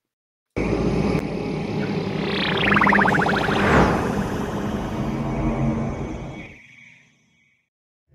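Cinematic intro sound effect at the start of a horror-rap music video: a rumble that starts suddenly about half a second in, with a falling whoosh sweeping down through the middle, then fading away around six to seven seconds in.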